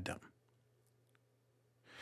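Near silence: faint steady room hum between spoken sentences, with an intake of breath near the end.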